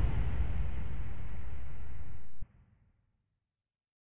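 The fading end of a mid-tempo electronic track: a low, rumbling wash of sound dies away, its highs thinning out first, then cuts off suddenly about two and a half seconds in.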